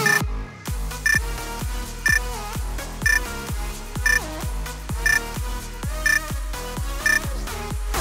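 Electronic dance music with a steady kick-drum beat, overlaid by a short high countdown-timer beep once a second, seven beeps in all. The music fills out again at the end.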